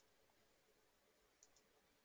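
Near silence: faint room tone with a couple of tiny clicks about one and a half seconds in.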